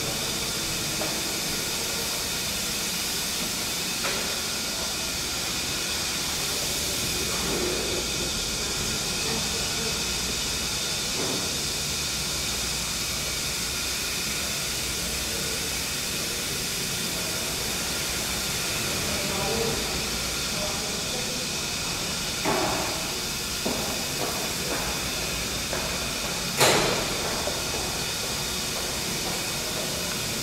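Steady hiss and faint hum of the steam-engine room, broken by a sharp click or knock about four seconds in and two more near the end.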